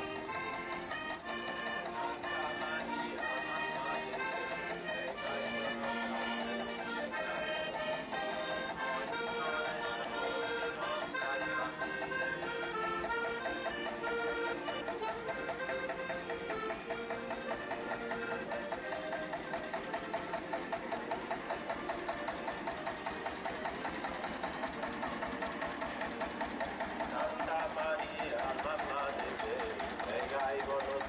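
Two button accordions playing a lively folk tune, fading after about halfway under the fast, even chugging of a tractor engine running close by.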